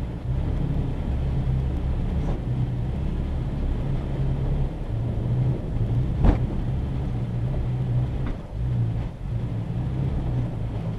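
2019 Toyota Tacoma TRD Off-Road driving slowly on a dirt trail, heard inside the cab as a steady low engine and drivetrain rumble. A sharp knock comes about six seconds in, with fainter knocks near two and eight seconds.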